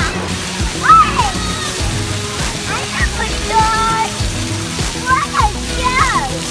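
Wave-pool water sloshing and splashing, under background music, with children's voices calling out now and then.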